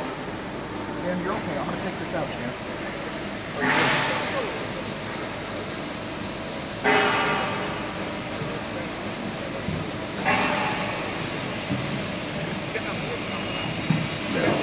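CNC hydraulic press brake working, with three sudden bursts of hissing machine noise, each fading over a second or two, about three seconds apart, as the machine is cycled during a dial-indicator accuracy test of the beam.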